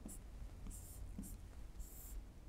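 Faint, short scratchy strokes of a pen writing numbers on an interactive display board, about three strokes in all.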